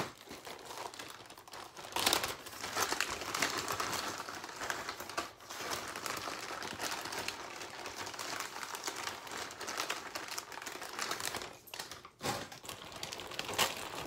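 Clear plastic zip-top bag and the wrapped medical supplies inside it crinkling and rustling as they are handled and packed, in irregular bursts, loudest about two seconds in and again near the end.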